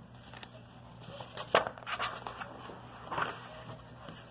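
Faint handling noise from a paper picture book being lifted and held up close to the phone: soft rustles and scrapes, with a light knock about one and a half seconds in.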